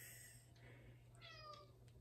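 A cat's single faint meow about halfway through, falling slightly in pitch, in otherwise near silence.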